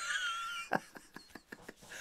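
A man laughing: a thin, high wheezing squeal for about the first half-second, then a run of short breathy catches.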